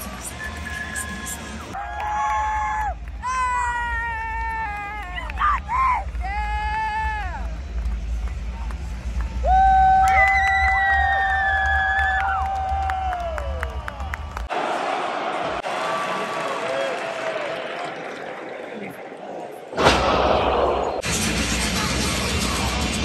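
Wrestler's entrance music over an arena PA, with heavy bass and a melody of long held, gliding notes above crowd noise. It cuts off abruptly about two thirds through, leaving thinner crowd noise, then a sudden louder surge of crowd noise near the end.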